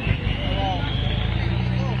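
A steady low engine hum that grows stronger in the second half, with people talking in the background.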